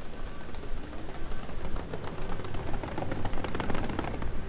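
City street noise: a low steady rumble of traffic, with a rapid clattering rattle of many clicks a second building from about halfway through and stopping near the end.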